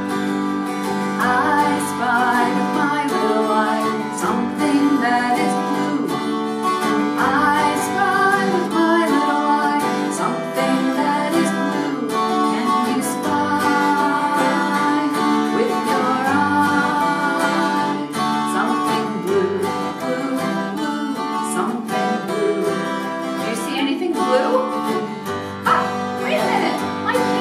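Acoustic guitar strummed in a steady rhythm, playing the accompaniment of a children's song.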